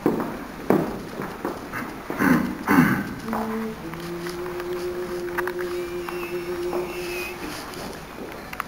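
A few knocks and shuffling sounds, then a short steady note and a longer, lower note held for about four seconds: the starting pitch given to a male vocal ensemble before it begins a chant.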